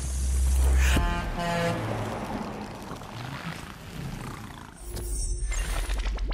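Sound effects from an animated TV channel ident: a deep rumble swells in the first second, then comes a sharp click, a quick run of electronic tones falling in pitch and a hissing whoosh. The deep rumble comes back near the end.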